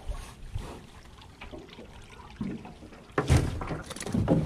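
Water sounds and small knocks around a small aluminum boat while a hooked fish is brought alongside, with a short, louder sudden noise a little after three seconds in.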